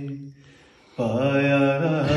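A man singing an Urdu devotional kalaam with no instruments. A held note dies away, there is a short pause, and about a second in he starts a new long, wavering note.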